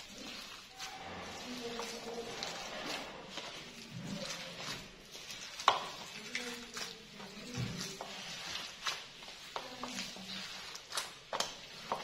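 Hands mixing and kneading a soft mash of boiled potato and shredded chicken in a bowl: wet squishing and mushing with irregular small clicks and knocks.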